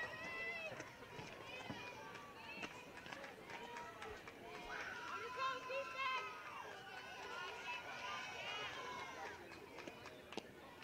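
Faint, high-pitched voices calling out across a softball field, coming in scattered bursts.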